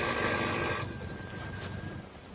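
Telephone bell ringing: the bell rattles for about a second, then the ring dies away.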